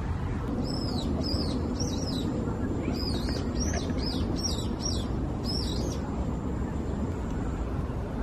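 A small bird chirping: a run of about a dozen short, high, arched notes in the first six seconds, over a steady low outdoor background noise.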